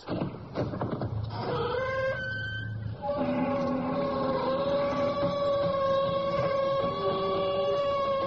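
Long, drawn-out creak of a door slowly swinging open: the show's signature creaking-door sound effect. It rises in pitch over the first few seconds, then holds at a nearly steady pitch.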